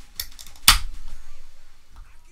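Aluminium can of sparkling Mtn Dew Kickstart being opened: a couple of light clicks at the tab, then one sharp crack about two-thirds of a second in, followed by a short hiss of escaping carbonation.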